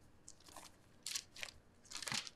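Thin Bible pages being turned and rustled by hand: a few short, faint papery swishes.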